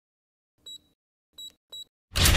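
Three short, faint high-pitched electronic beeps: one about two-thirds of a second in, then two close together near the end. They are an intro sound effect for a logo.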